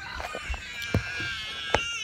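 A child's long, high-pitched squeal during rough play, with two sharp knocks, about a second in and near the end.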